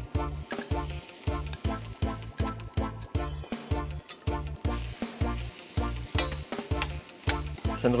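Marinated venison pieces frying in hot oil in a stainless steel pan, stirred and scraped around with a metal spoon. Background music with a steady beat plays underneath.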